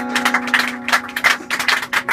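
Live band music: a guitar holds a steady sustained note while quick, sharp clicks keep a rhythm over it.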